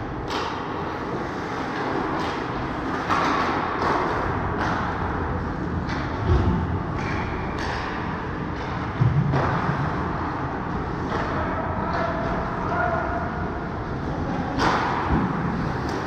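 Indoor ice hockey rink during play: steady scraping of skates on the ice, with sharp knocks of sticks, puck and boards about 3, 6, 9 and 15 seconds in.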